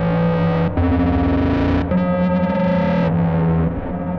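Distorted synthesizers played live as a dark ambient drone: sustained buzzy notes layered over a held bass, the pitches shifting about once a second.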